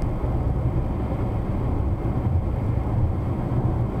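Steady low rumble of a car's engine and tyres on asphalt while driving, heard from inside the cabin.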